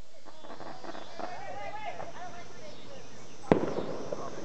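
A single sharp pop about three and a half seconds in, followed by a hiss: a small firework fountain catching light.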